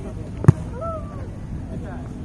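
A volleyball being hit during a rally: one sharp smack of hand on ball about half a second in. Faint shouting from players follows.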